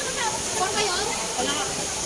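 Indistinct voices of players calling out on an outdoor basketball court, over a steady background hiss.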